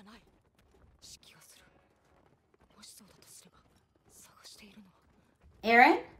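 Hushed, whispery speech in short phrases, then one louder phrase with a rising pitch just before the end.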